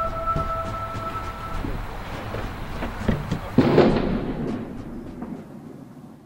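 Dark horror-film sound design: a low rumble under a steady two-note drone that stops about a second and a half in, then a louder hit about three and a half seconds in that fades away.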